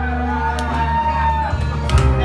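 A man singing through a microphone over loud amplified music with a heavy bass, holding one long note for about a second.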